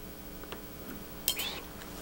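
Small fly-tying scissors give a brief, light metallic clink about a second and a half in. A faint soft click comes before it.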